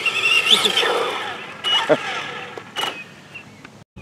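A man laughing in a high, wavering whinny-like laugh that fades out over the first second and a half, followed by a few short, faint sounds.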